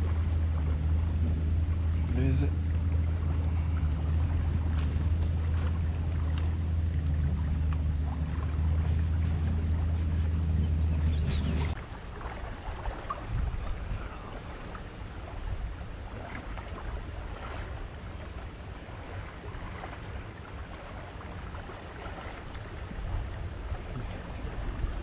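A steady low engine-like drone from a motor running nearby, which cuts off abruptly about twelve seconds in. After that, only a faint outdoor background with light wind on the microphone and a few small clicks.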